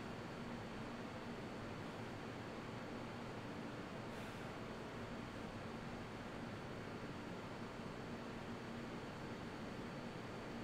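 Steady room noise with a faint hum and no distinct events, and a faint rustle about four seconds in.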